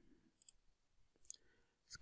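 Near silence, broken by faint computer-mouse clicks: one about half a second in and a quick pair a little past the middle.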